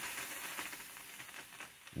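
New-Tech industrial steam iron releasing a burst of steam: a faint hiss that fades away, with a few faint clicks.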